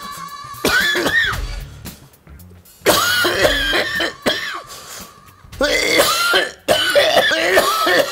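Sad background music with sustained held tones, broken by loud, wavering, strained vocal sounds and coughing in several bursts.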